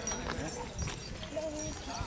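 Indistinct voices of several people walking with a string of riding camels, with scattered footstep clicks on the dirt track.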